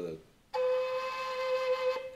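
D whistle sounding one steady held note, the C natural, starting about half a second in and sustained for about a second and a half.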